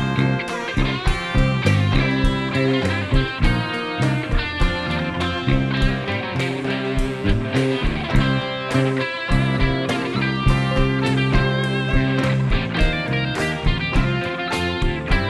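Live rock band playing an instrumental passage: electric guitars over a drum kit's steady beat, with no vocals.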